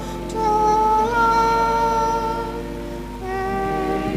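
A slow hummed melody of long held notes, stepping to a new pitch about a second in and again near the end, over a steady low hum.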